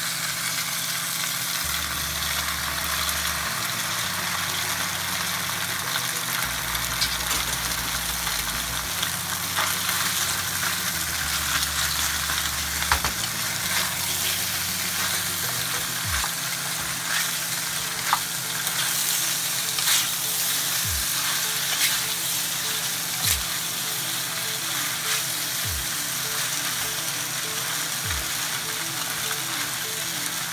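Rigatoni and onions sizzling in oil in a skillet while being stirred with a wooden spoon, a steady sizzle with scattered clacks and scrapes of the spoon against the pan.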